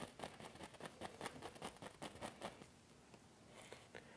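Fan brush loaded with oil paint tapping and stroking against the canvas: a quick run of faint, light taps and scratches that dies away after about two and a half seconds.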